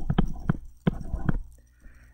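A stylus tapping on a tablet screen while handwriting a word, giving several sharp clicks in the first second and a half.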